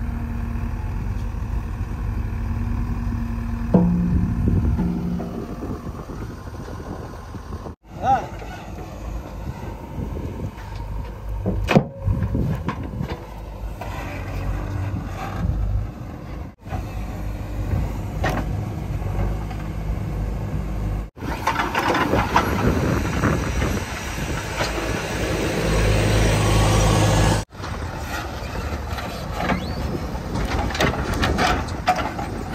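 JCB 3DX backhoe loader diesel engines running and working their hydraulic arms while digging a pipeline trench and handling pipe, heard across several cuts. The engine note rises under load, loudest over a stretch a few seconds before the end.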